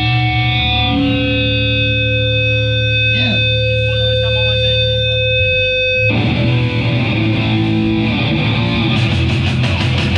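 Live hardcore punk band. A distorted electric guitar holds a ringing chord as steady sustained tones, then the full band comes in about six seconds in, with cymbal crashes near the end.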